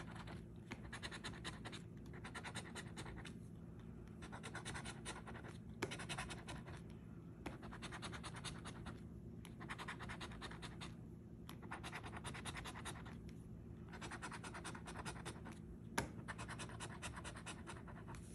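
Edge of a coin scratching the coating off a paper scratch-off lottery ticket, in quick strokes that come in runs of a second or two with short pauses between, and a couple of light knocks.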